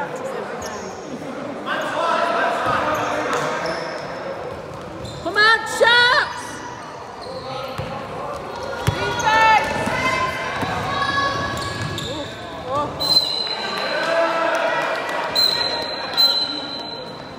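Basketball game on an indoor court in a large echoing hall: the ball bouncing as it is dribbled, short high squeaks of trainers on the court floor about five to six seconds in and again around nine seconds, over players' and spectators' voices.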